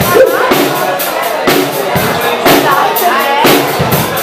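Live electric blues band playing: a drum kit keeping a steady beat of about two hits a second under electric guitars and bass.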